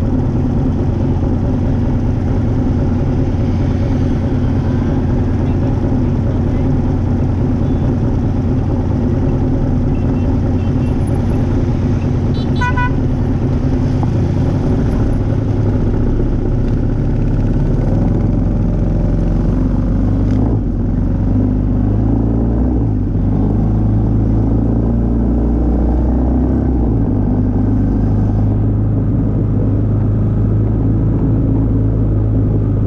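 Motor vehicle engine running in steady city traffic, with a short horn toot about twelve seconds in.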